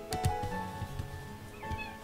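A cat gives a short meow near the end, over background acoustic guitar music. A few sharp knocks sound just after the start.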